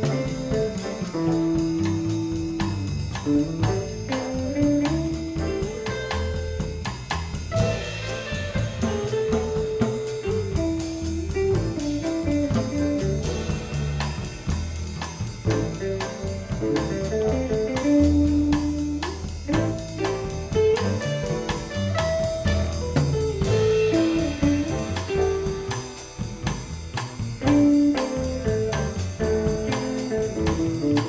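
Small jazz band playing: an electric guitar plays a single-note lead line in quick runs over upright bass and a drum kit with steady cymbal ticks.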